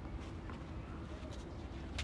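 Quiet outdoor ambience on a tennis court between points: a low steady rumble with a few faint soft scuffs.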